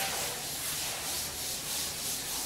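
Chalk writing being wiped off a blackboard: a dry rubbing hiss in repeated strokes as the board is erased.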